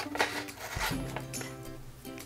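Background music with sustained notes that change about three-quarters of a second in.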